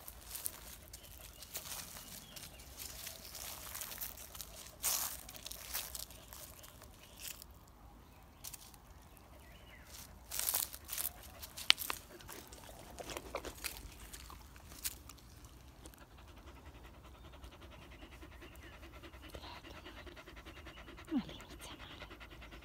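A small black-and-white dog panting with its tongue out, with scattered rustles and knocks of handling as it is petted, the loudest about halfway through.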